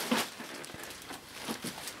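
Faint rustling and crinkling of the clear plastic wrap sealed around a vacuum cleaner as it is handled and moved, with a few soft knocks.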